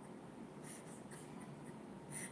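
Quiet small room with faint rustling and a couple of soft, brief scratchy sounds around the middle.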